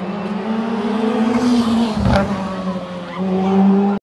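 Rally car engine running hard at high revs as the car passes, with a sharp crack about two seconds in as the revs briefly drop, then pulling loudly again near the end.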